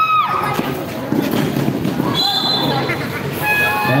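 Basketball being dribbled on a concrete outdoor court under crowd noise. A short high steady tone sounds about two seconds in, and a steady pitched, horn-like tone begins near the end.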